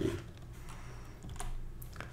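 A few computer keyboard key clicks, the clearest about one and a half seconds in, as the next slide is brought up, over a faint low electrical hum.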